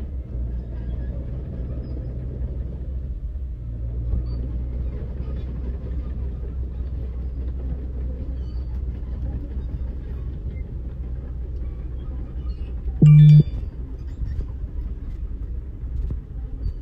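Caterpillar 312D2 GC crawler excavator's diesel engine running with a steady low drone as the machine travels on its tracks. About thirteen seconds in, a single loud horn-like tone sounds for about half a second.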